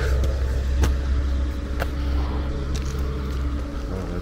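A steady low rumble that fades slightly toward the end.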